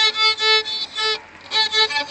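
Violin bowed in a run of short notes, mostly on the same pitch, with a brief pause a little after halfway before the notes start again.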